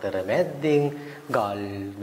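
A man speaking Sinhala, telling a story in an animated voice with some drawn-out syllables.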